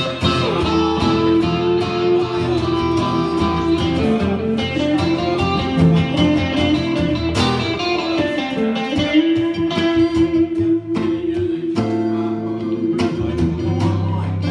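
Two guitars playing a slow blues song live: an electric guitar holds a sustained lead melody with pitch bends over acoustic guitar chords.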